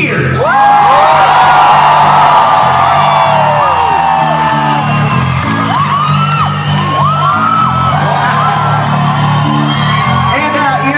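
Live rock band playing loudly, with crowd whoops and yells over the music.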